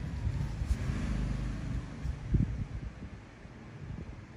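Steady low rumbling background noise with a couple of soft thumps, easing off near the end.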